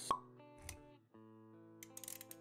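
Sound effects and music of an animated logo intro: a sharp pop right at the start, a soft low thump a little later, then steady held music notes with a few quick clicks near the end.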